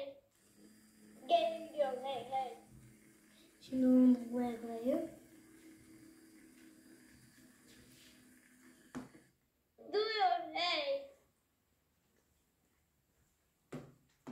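A young child's high voice in three short bursts of vocalising, over a faint steady hum that stops about nine seconds in.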